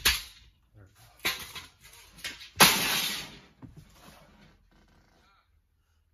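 A sharp bang, a second knock about a second later, then a louder rough crash lasting about half a second, as a window is worked free of its opening.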